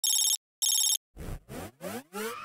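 A telephone rings with a trilling double ring, two short bursts a quarter-second apart, followed by three short rising swoops in pitch.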